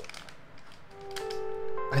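Soft background music with held notes coming in about a second in, over faint rustling and tapping of a cardboard box and a foil-wrapped blind-box pouch being handled.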